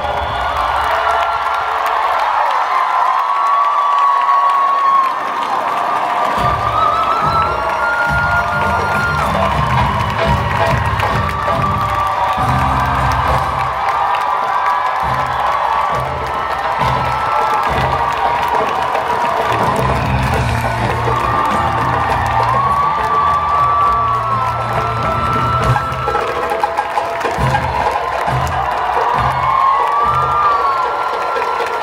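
A large crowd cheering and whooping over loud music. A pulsing bass line comes in about six seconds in and carries on under the cheers.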